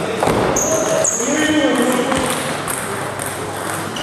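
Table tennis rally: the ball clicking off the paddles and the table a few times, echoing in a large hall, with short high squeaks over it.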